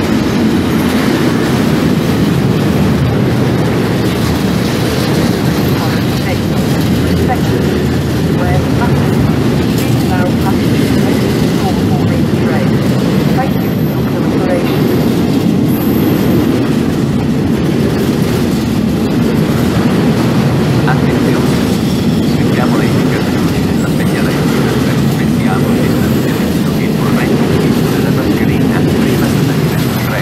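Long intermodal freight train of container wagons rolling past close by: a steady, loud rumble of wheels on rail, with a few brief high-pitched squeals about halfway through.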